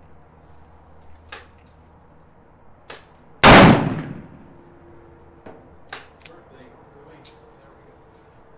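An 1847 Colt Walker .44 black-powder percussion revolver fires a single shot about three and a half seconds in, loaded with 40 grains of powder behind a cast pure-lead round ball; the report is very loud with a short echoing tail. Several faint sharp clicks come before and after it.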